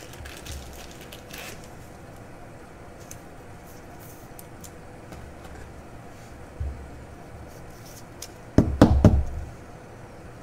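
Trading cards being handled and sleeved by hand: faint plastic rustles and small clicks, then a quick cluster of loud knocks against the table near the end as the card goes into a rigid holder.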